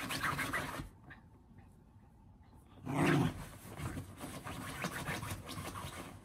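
A Shiba Inu digging and pawing at a fleece blanket in a padded fabric dog bed: scratching and fabric rustling in two bouts, a short one at the start and a louder, longer one from about three seconds in.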